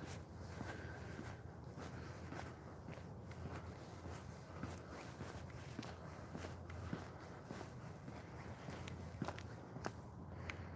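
Faint footsteps of a person walking at a steady pace on an asphalt road, heard as a regular run of soft steps over a low steady rumble.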